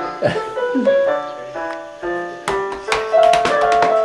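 Casio electronic keyboard played with a piano voice: a slow line of held notes stepping from one pitch to the next, with a quick run of sharp clicks starting about two and a half seconds in.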